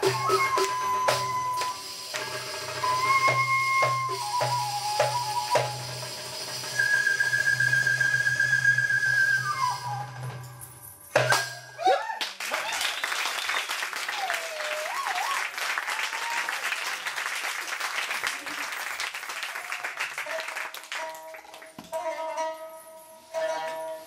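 Live Middle Eastern ensemble music with held melodic lines over a low, pulsing rhythm and percussion taps. About halfway through the music breaks with a few sharp hits, and a denser, busier sound takes over.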